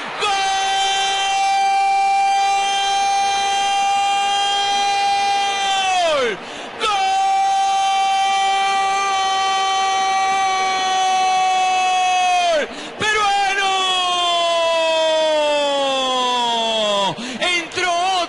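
A football commentator's long drawn-out goal cry, 'goool', held on one high note three times in a row. The first two last about six seconds each and drop in pitch at the end; the third slides steadily downward over about four seconds.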